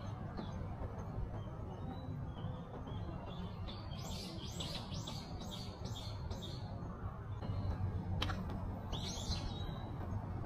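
A songbird singing in the trees: a quick run of about seven repeated high notes about four seconds in, and another short high call near the end, over a steady low outdoor rumble.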